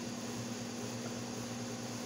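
Steady background hum: a constant low tone over an even hiss.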